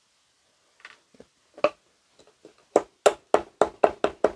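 Cinnamon stick being crushed in a small wooden mortar with a wooden pestle: a few light clicks, then from a little under three seconds in a fast run of sharp wooden knocks, about four a second.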